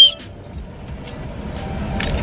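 A small keychain whistle blown in one short, high toot right at the start, followed by a much quieter stretch of low background noise.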